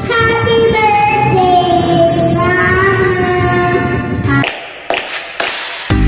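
A young girl singing into a karaoke microphone over a backing track. The singing breaks off about four seconds in, followed by a few sharp clicks and hiss.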